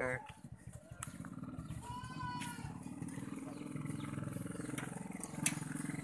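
Motorcycle engine on a homemade four-wheeled buggy idling steadily, a fast, even low pulsing.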